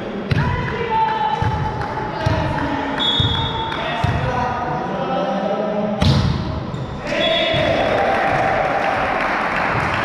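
A volleyball bounced repeatedly on a hard gym floor as the server prepares, then struck hard by the server's hand about six seconds in, echoing in the sports hall.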